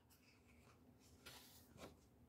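Near silence, with a faint papery rustle over about the second half as a coloring book's page is turned.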